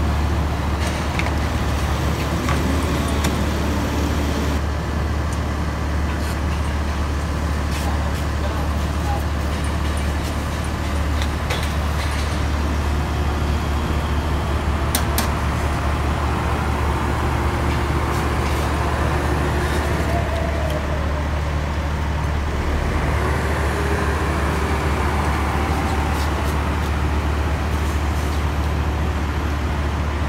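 Construction site noise: a steady low drone of running heavy equipment, with scattered knocks and clicks and faint voices.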